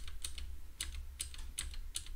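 Computer keyboard keys being pressed: about six separate, irregularly spaced clicks, entering a command in a terminal. A low steady hum sits underneath.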